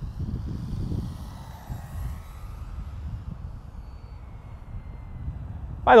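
Electric motor and propeller of an E-flite Air Tractor 1.5m RC plane flying slow and low, heard as a faint whine that drifts slightly down in pitch as it passes. Wind rumbles on the microphone underneath.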